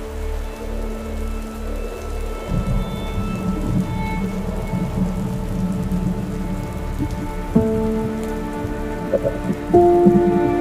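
Steady rain with low rumbles of thunder, mixed under slow music of long held notes; a new chord enters about three-quarters of the way through and another just before the end.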